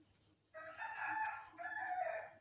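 A rooster crowing: one loud call of about two seconds in two parts, with a brief dip in the middle.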